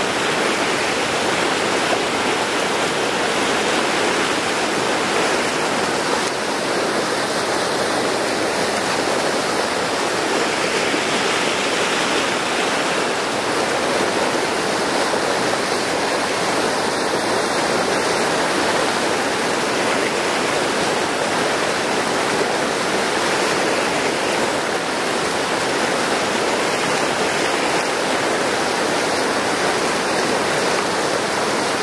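A river rushing and cascading over granite ledges in small waterfalls and chutes: a steady, unbroken rush of water.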